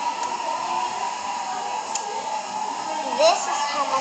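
Steady background hiss with a held tone, then a girl's voice beginning near the end.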